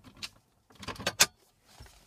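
The plastic lid of the 2011 GMC Terrain's dash-top storage bin being pushed shut: a few light clicks, then a sharp snap as the latch catches a little past the middle.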